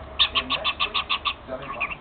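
Cockatiel chattering with its head inside a cardboard toilet paper roll: a fast run of about nine short chirps, roughly seven a second, then a few quicker chirps near the end.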